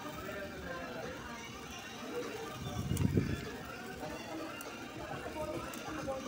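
Restaurant din: background voices of other diners chattering, with a single low thump about halfway through.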